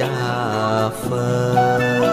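Slow Buddhist devotional music in a chant style: long held melody notes that glide slowly between pitches over a steady low drone.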